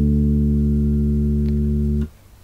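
A single low note on the D string of a five-string electric bass, held and slowly fading, then cut off sharply right at the end.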